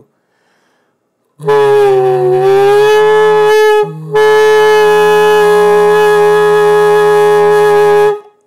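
Saxophone neck and mouthpiece blown on their own while the player sings a lower note into them at the same time, giving a raspy growl. A first note starts about a second and a half in, sags in pitch and breaks off just before four seconds; then a steady held note follows.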